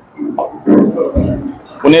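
A man's low, rough throat sound, clearing his throat close to the microphone in a pause between words, with a low bump about a second in.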